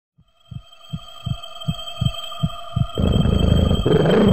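Opening of an electronic music track: low, heartbeat-like thumps about two to three a second over a steady high drone, growing louder. About three seconds in, a dense low layer comes in under them.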